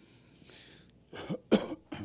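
A man clearing his throat: two short, rough coughs about a second in, the second one louder.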